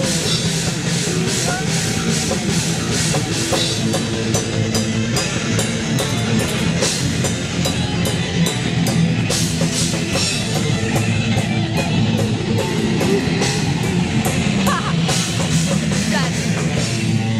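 Live heavy metal band playing loud: distorted electric guitars over a drum kit, with steady, evenly spaced cymbal and drum hits.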